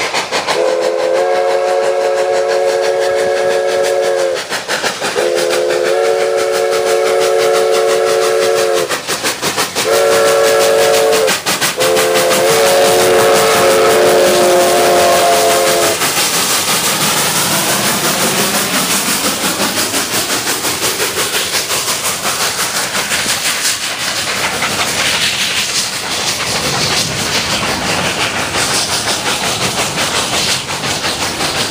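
Steam locomotive's multi-chime whistle sounding two long blasts, one short and one long: the grade-crossing signal. It sounds over the exhaust of two steam locomotives working hard up a steep grade. After the whistle stops, a steady rush of steam and running gear continues, with a regular beat as the train rolls past.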